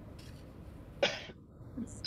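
A single short cough about a second in, over low background noise.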